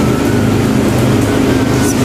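A loud, steady mechanical hum with a low drone.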